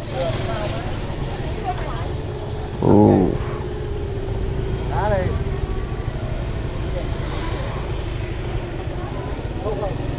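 Motorbike engine idling steadily under market voices, with one short loud call about three seconds in.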